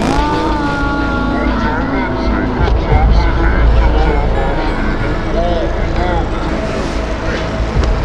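Loud voices, one held on a steady pitch for about a second near the start and shorter rising-and-falling ones later, over a steady deep rumble.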